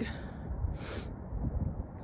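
Low wind rumble on the microphone, with a short, breathy intake of breath about a second in.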